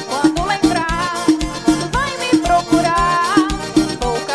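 Upbeat Brazilian piseiro dance music in an instrumental passage: a steady kick drum about three beats a second under a sliding, bending lead melody.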